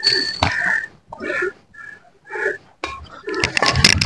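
Badminton rally: several sharp cracks of rackets striking a shuttlecock, spaced irregularly, with short high squeaks of court shoes on the mat between them.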